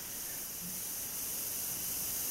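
Steady background hiss of the recording's noise floor, with no distinct sounds.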